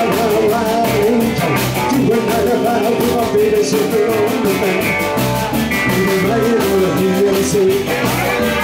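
Live rock and roll band playing: electric guitars, bass guitar and drum kit keeping a steady beat.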